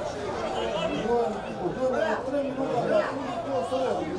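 Spectators chattering, several voices talking over one another.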